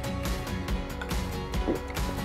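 Background music with steady held tones.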